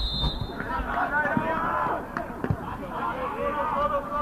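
Indistinct shouts and calls of players and coaches across a football pitch, with a few short thumps of the ball being kicked over a low rumble.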